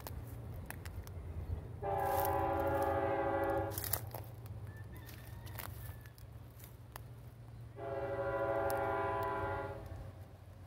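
Freight locomotive's air horn sounding two long chord blasts about four seconds apart, each lasting about two seconds, as the train whistles for a grade crossing. Underneath, a steady low rumble of the tank cars rolling past.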